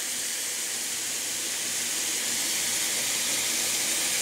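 Sliced white mushrooms sizzling in butter and oil in a hot pan: a steady hiss that grows slightly louder.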